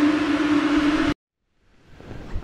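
Dodge Durango R/T's 5.7-litre HEMI V8 at wide-open throttle, about 5,000 rpm, on a chassis dyno, heard from inside the cabin: a steady drone with one strong tone, cut off abruptly about a second in.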